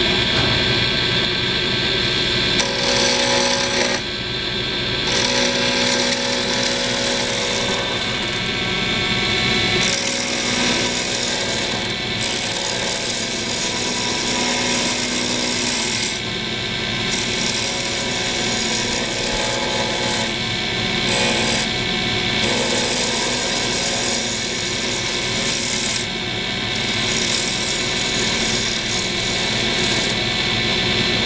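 Wood lathe running while a hand-held turning tool cuts pen blanks spinning on a mandrel: a steady motor hum under a scraping hiss that comes and goes in passes of a second to several seconds as the tool bites the wood.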